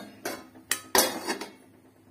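A steel spoon and a steel plate clatter against a metal cooking pot: four or five sharp clinks and scrapes, the loudest about a second in, dying away halfway through.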